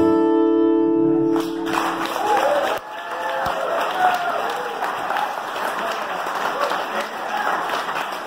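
The last chord on two acoustic guitars rings out and stops about a second and a half in, giving way to an audience clapping and cheering.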